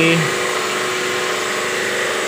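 Portable high-pressure jet washer of the kind used to wash split AC units, its motor and pump running steadily with a constant hum.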